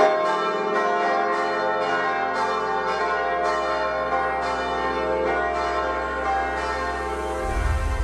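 Church bells pealing in the Romanesque bell tower of the collegiate church, struck about twice a second, each note still ringing under the next. A low rumble comes in near the end.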